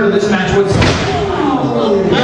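A wrestler slammed down onto the canvas of a wrestling ring: one heavy slam about half a second in, with voices talking around it.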